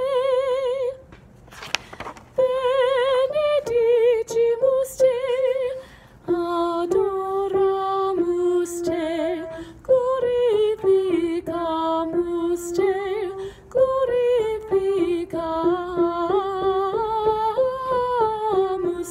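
A woman singing a choral part line alone and unaccompanied, in Latin, holding long notes with vibrato and pausing briefly for breath twice.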